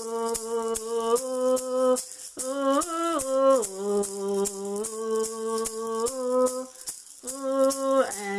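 A woman singing a slow melody in long held notes while shaking a hand-held maraca in a steady beat of a few shakes a second. The voice breaks briefly about two seconds in and again near the end.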